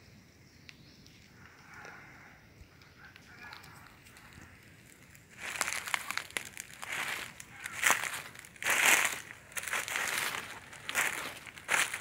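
Dry fallen leaves crunching and rustling in irregular bursts, beginning about five seconds in after a quiet start.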